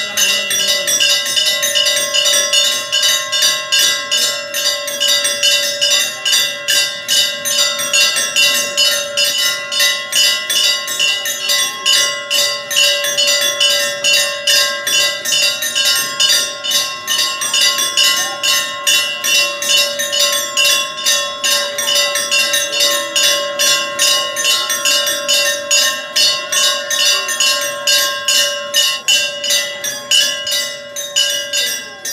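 A temple bell rung rapidly and without pause, about four strokes a second, its ring hanging on between strokes, for the aarti lamp offering.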